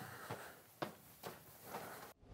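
A few faint footsteps on a wooden floor as a person walks away.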